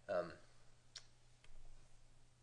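Two clicks from a computer pointing device: a sharp one about a second in and a fainter one about half a second later, over a quiet room.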